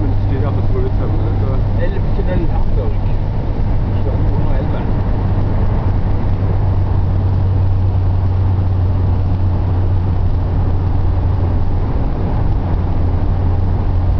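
Motorhome engine running with a steady, deep low hum, with faint voices in the first few seconds.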